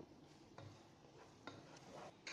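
Faint scraping and a few light knocks of a wooden spatula stirring chopped onions in a stainless steel pot.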